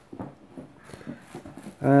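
Mostly quiet with faint scattered clicks and rustles, then a man's drawn-out, hesitant 'um' near the end.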